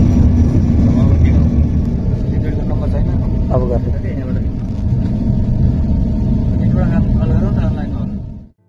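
Airliner cabin noise during landing, a loud low rumble, with passengers' voices and clapping about four seconds in.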